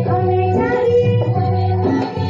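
Qawwali singing with instrumental accompaniment: held, gliding vocal notes over a steady low drone.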